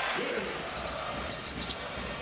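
Basketball arena ambience: a murmuring crowd, with a ball being dribbled on the hardwood court.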